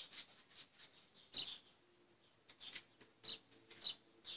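A small bird chirping a few times, short high chirps spaced about a second or two apart over a quiet room.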